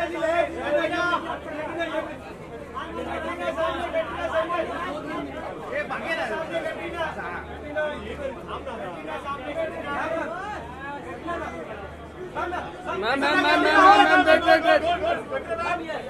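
Overlapping voices of press photographers chattering and calling out, with a louder burst of shouting near the end.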